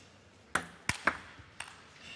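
Table tennis ball ticking as it is bounced before a serve: four sharp clicks at uneven intervals over about a second.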